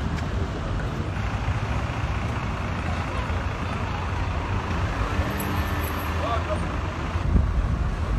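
Street noise: a steady low rumble of road traffic, with indistinct voices of people nearby.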